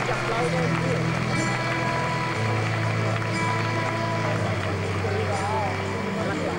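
Live folk-rock band playing a passage of a slow ballad: acoustic guitar over long held low notes that change about every two seconds, with a wavering melody line above.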